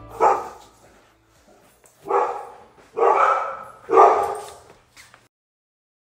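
A dog barking four times: a single bark, a pause, then three barks about a second apart.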